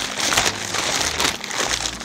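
White packing paper crinkling and rustling in irregular crackles as it is pulled off a glass goblet by hand.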